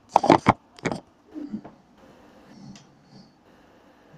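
Handling noise from the camera being moved and set in place: a quick run of sharp knocks and clatter in the first second, a softer knock a little later, then faint scraping and rustling.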